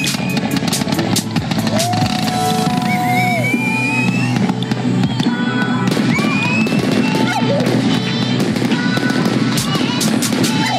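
Fireworks popping and crackling in rapid, irregular bursts, with a few gliding whistles, mixed with epic orchestral background music.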